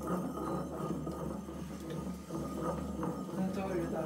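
A wooden pestle working a wet mixture in a ceramic mortar, giving a few soft knocks against the bowl, under laughter and talk.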